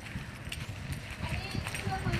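Footsteps on dirt ground: irregular low thuds, with faint voices talking over them in the second half.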